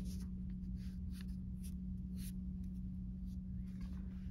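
Soft rubbing and scuffing of hands rolling a clay slab around a paper-wrapped bottle, a few faint brushes scattered through, over a steady low hum.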